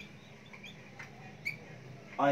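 Whiteboard marker squeaking as it writes, a handful of short high squeaks with the loudest about a second and a half in.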